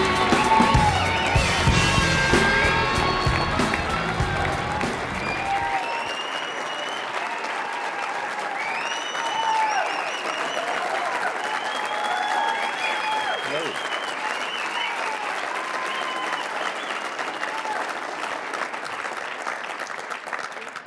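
Walk-on music with a heavy bass beat, under an audience applauding and cheering. The music cuts off about six seconds in, and the applause and scattered shouts from the crowd carry on until just before the end.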